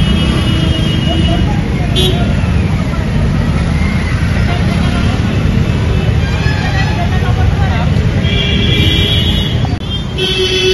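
Busy road traffic with dense low rumble, voices of people nearby, and a vehicle horn sounding for about a second and a half near the end.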